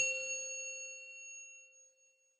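A single chime-like ding sounding several pitches at once, struck once and fading away over about two seconds: a logo sound effect.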